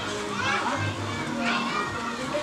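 Voices talking, not clearly made out, over background music.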